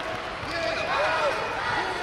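Indoor sports-arena ambience: scattered voices of people around the mat, echoing in a large hall, with several short squeaks that rise and fall in pitch.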